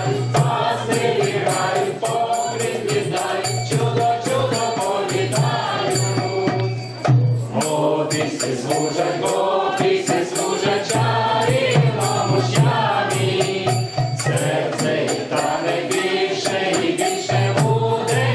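Mixed group of women's and a man's voices singing a Vaishnava carol together, with a hand tambourine's jingles struck in rhythm.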